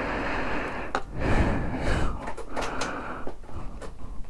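Rustling and shuffling with a couple of sharp clicks, from the rider moving about and straining against the motorcycle, which will not roll because it is left in gear. No engine is running.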